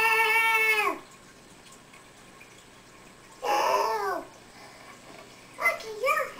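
Two drawn-out vocal cries. The first is held on one pitch for about a second and drops away at its end; the second, about three and a half seconds in, is shorter and falls in pitch.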